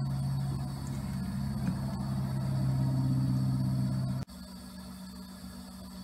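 Steady low mechanical hum with a few even overtones. It cuts off suddenly about four seconds in, leaving a quieter, slightly different hum.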